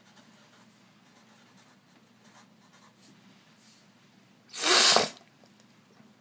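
Sharpie fine-point marker writing faintly on paper over a low steady hum. About four and a half seconds in, a loud, short burst of breathy noise lasts about half a second.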